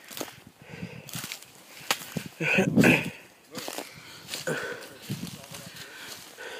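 Footsteps on dry leaf litter and twigs in woodland: an uneven run of crunches and rustles while walking, loudest about halfway through.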